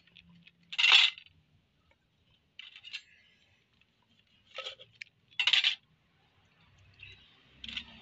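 A kitchen knife slicing a lime over a clay mortar, the cut pieces dropping in: about five short clinks, the loudest about a second in.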